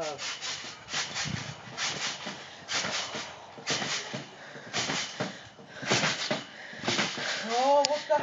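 Trampoline springs and mat creaking and rasping in a regular rhythm, about once a second, as someone bounces lightly on it.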